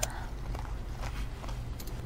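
A person quietly chewing a sugared strawberry: one sharp mouth click at the start and a few faint soft mouth sounds after it, over a steady low hum.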